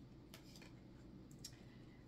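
Near silence, with a few faint clicks from a deck of tarot cards being handled.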